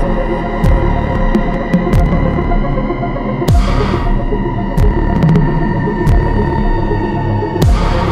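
Dark techno track: a deep kick drum whose pitch drops sharply on each hit, over a sustained droning synth, with a hissing crash about every four seconds.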